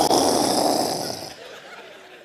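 A man's breathy vocal whoosh imitating gases igniting in a fireplace. It starts suddenly just before and fades away over about a second and a half.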